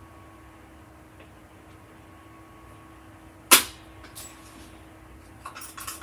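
Crop-A-Dile hole punch snapping once through a stack of notebook pages about three and a half seconds in, with a fainter click just after.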